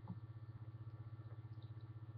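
Low, steady electrical hum.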